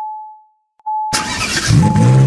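Intro sound effect of a car starting up: two short dashboard-style chime pings, then about a second in a car engine sound cuts in and revs up, with music under it.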